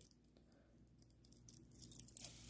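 Near silence, then a few faint small clicks of a ring of keys being handled, starting about a second and a half in.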